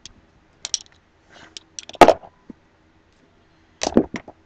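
Duct tape rolls and craft items being packed into a storage box by hand: scattered light clicks and taps, with one sharp knock about halfway through.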